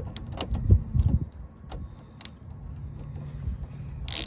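Tribus 13 mm ratcheting line wrench being handled and set on a brake-line fitting of an ABS module: a few scattered light metal clicks over a low background rumble.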